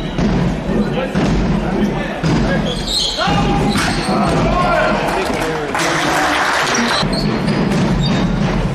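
Handball play in a reverberant sports hall: the ball bouncing on the hall floor in repeated knocks, with players' voices calling out. A rush of noise comes about six seconds in and lasts about a second.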